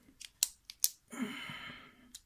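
Small metal tools and lock parts being handled: a few sharp clicks, the loudest about half a second and nearly a second in, then a short rasp lasting almost a second.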